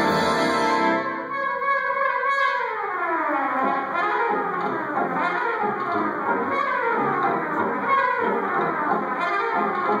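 Solo trumpet playing a jazz-style concerto over a brass band. The band holds a chord; about a second in, the music breaks into a long falling run, followed by a string of shorter descending phrases.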